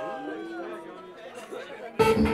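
Indistinct voices with sliding, warped pitch, softer than the music around them.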